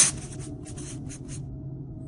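A run of short scratchy noise bursts in an uneven rhythm, thinning out and stopping about a second and a half in, over a faint steady low hum.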